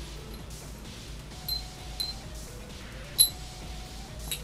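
Metal begleri on a chain being slung, clicking sharply three times about half a second to a second apart, the last click the loudest, each with a brief metallic ring.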